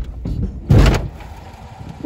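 A car's front bumper bumping into the back of another car at parking-lot speed: one loud thud a little under a second in, with music just before it.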